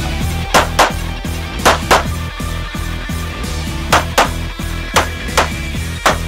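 Rock background music, with 9mm pistol shots cutting through it in quick pairs about a quarter second apart: four double taps at uneven intervals. The pistol is a Smith & Wesson M&P Pro.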